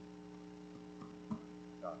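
Steady electrical hum of several fixed tones from the recording or sound system, with a faint short click a little over a second in.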